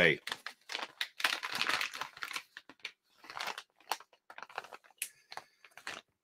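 Plastic soft-bait package crinkling and rustling as it is handled, in an irregular run of crackles that is densest between about one and two and a half seconds in, then scattered ticks.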